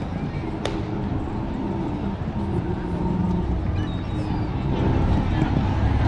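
Small plastic penny-board wheels rolling over wooden boardwalk planks: a steady low rumble with a fast clatter from the plank joints, a little louder in the second half. People talk in the background.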